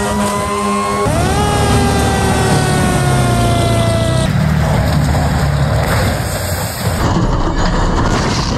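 A fire truck running: a loud pitched whine rises a little, then after a sudden jump slowly falls in pitch for about three seconds over engine rumble. About four seconds in it gives way to a rougher, noisier low rumble.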